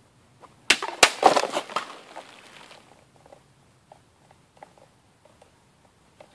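A sword cutting through a water-filled plastic bottle: two sharp strikes in quick succession, then about two seconds of water splashing and plastic pieces clattering down. It is a cut that hits the bottle poorly.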